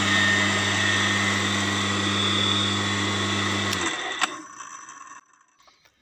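The electric motor of an AL-KO Easy Crush MH 2800 garden shredder runs with a steady hum and whir. About four seconds in it is switched off with a click and winds down.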